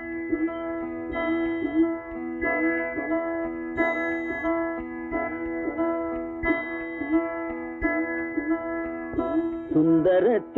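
Instrumental passage of a classic Tamil film song: a plucked string instrument plays a melody of repeated notes that slide slightly in pitch, over steady held tones.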